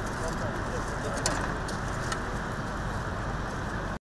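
Outdoor ambience: a steady background hiss with faint, indistinct voices of people around, and two brief clicks in the middle.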